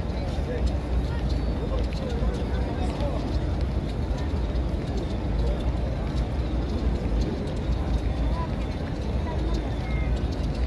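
Murmur of many people talking in the background, no single voice clear, over a steady low rumble.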